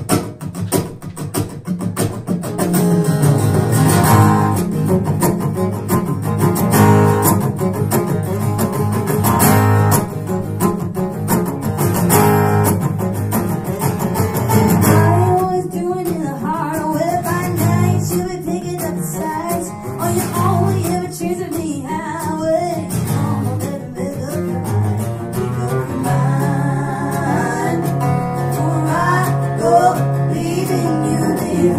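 Acoustic guitars strummed in a steady rhythm, played live as a song's opening. Voices come in singing about halfway through.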